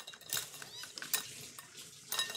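A few light clinks and scrapes against a glass mixing bowl as sticky almond cookie dough is scooped out and portioned by hand.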